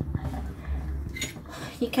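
Handling noise of a wet plastic jerrycan being moved about in a steel sink: a low, steady rumble with a brief faint rustle about a second in.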